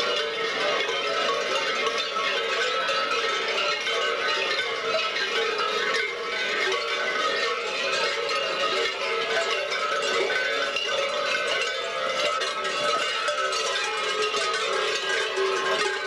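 Many large metal bells worn on the belts of babugeri (Bulgarian kukeri mummers in goat-hair costumes) clanging together as the dancers jump and sway. It is a dense, unbroken jangle of overlapping bell tones.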